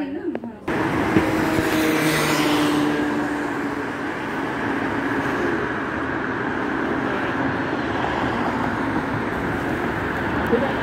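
Road traffic noise that starts abruptly about a second in and holds steady, with a vehicle passing close about two seconds in.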